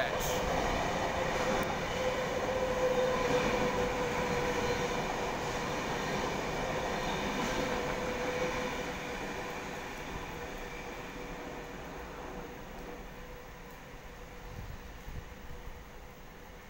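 Double-deck electric suburban train running through the station on a far track: wheel and rail noise with a steady whine over it, loud at first and slowly fading as the train draws away.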